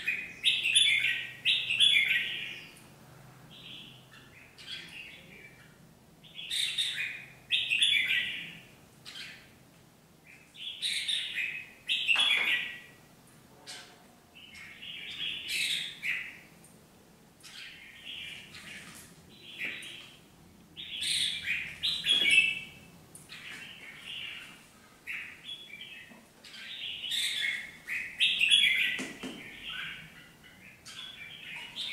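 Red-whiskered bulbul giving its chattering 'ché chéc' calls in short bursts every couple of seconds.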